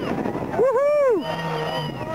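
A spectator's drawn-out whoop, its pitch rising and then falling away, about half a second in, over the rumble of a rock crawler running down a dirt slope.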